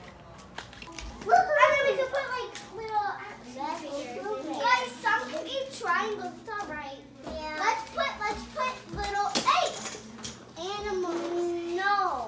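Several young children's voices chattering and calling out over one another while they play, the words indistinct.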